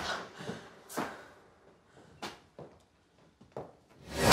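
A few faint, separate knocks and thumps in a quiet room, one about a second in, two close together a little past the middle, and one near the end.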